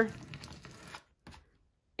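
Plastic card dragged across thin paper, scraping fluid acrylic paint over a stencil beneath: a faint rasping for about a second, then near silence.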